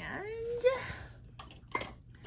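A woman's short wordless vocal sound, rising in pitch, then a sharp click and a second short knock a second later as objects are handled.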